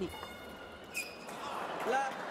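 A single sharp click of a table tennis ball about a second in, over a low murmur from the arena crowd that swells near the end.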